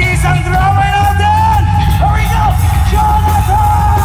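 Live rock band playing loudly, bass guitar and drums underneath, while a vocalist holds one long high belted note that wavers and dips briefly twice.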